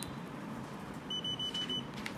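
Mangal AlcoPatrol PT100P handheld breath analyser giving a quick run of about five short high beeps about a second in, as its power button is held down to switch it off.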